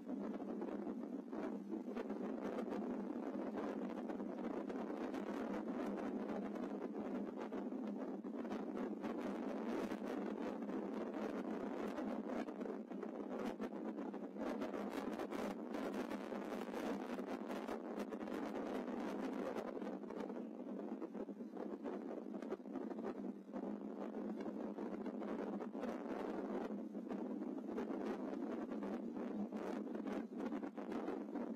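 Gale-force wind buffeting the microphone of a rifle-mounted thermal scope, a steady rushing noise.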